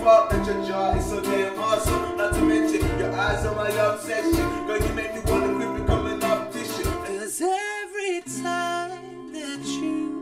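Pop song sung with acoustic guitar over a steady beat of about two beats a second. About seven seconds in, the beat stops and a single voice holds a long, wavering note before quieter singing resumes.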